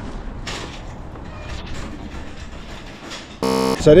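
Steady background noise with a few faint knocks, then a short, loud electronic buzz lasting under half a second near the end.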